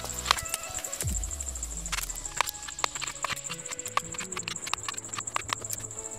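Wooden mallet striking a wood-carving chisel as it cuts into a log: a rapid, irregular run of sharp knocks, over background music.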